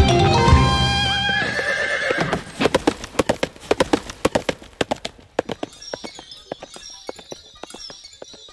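A horse galloping on a dirt track, its hoofbeats coming in quick, uneven knocks that start a couple of seconds in, under the last of a song, and fade away after about five seconds.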